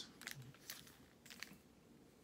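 Faint crinkling of a vinyl LP's plastic outer sleeve as the record is handled and turned over: a few soft crackles in the first second and a half, otherwise near quiet.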